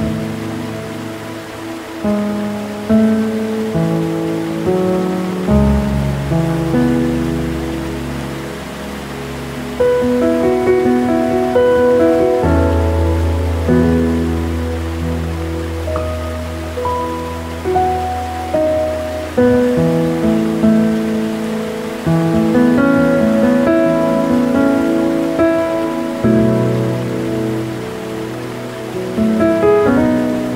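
Slow, gentle piano music: single melody notes and chords that strike and fade, over low bass notes held for several seconds, with a faint steady rush of waterfall water underneath.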